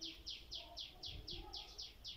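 A bird calling: a fast, even series of short, high chirps, each falling in pitch, about five a second.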